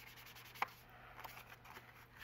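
Ink blending tool rubbing ink onto the edges of a piece of scrapbook paper: a faint, steady scuffing, with one small sharp tap a little over half a second in.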